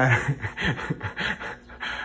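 A man laughing breathily under his breath, a quick run of short exhaled bursts.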